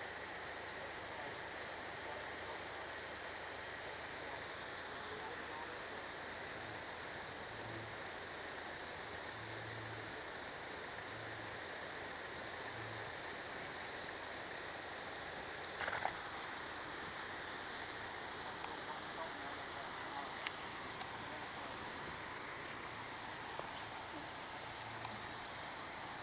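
Land Rover Freelander creeping slowly down a rocky, wet track, its engine faint at low revs under a steady outdoor hiss. There is a short knock about two-thirds of the way through and a few small clicks near the end.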